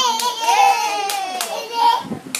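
Several sharp hand claps over a high, drawn-out child's voice that glides up and down, typical of a toddler squealing with excitement.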